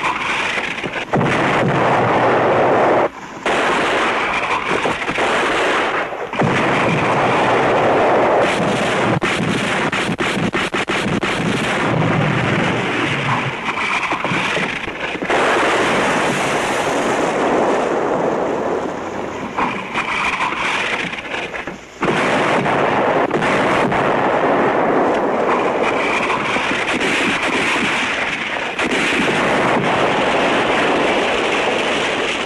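Battle sound effects: near-continuous gunfire and explosions, dense rapid shots with brief lulls a few times.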